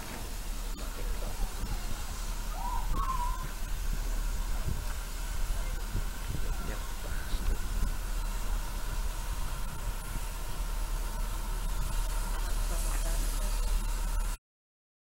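Steam locomotive running slowly in to the platform, with a steady hiss of steam.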